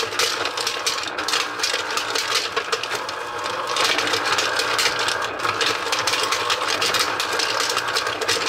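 Electric ice cream maker's motor running steadily while its built-in candy crusher spins and chops M&Ms, the hard-shelled candy rattling and crunching against the cutter in a fast stream of clicks.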